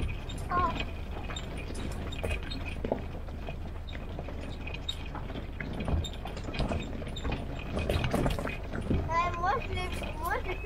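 Open military jeep driving down a rough, rutted forest track: a low, steady rumble with frequent knocks and rattles from the body and load jolting over the bumps.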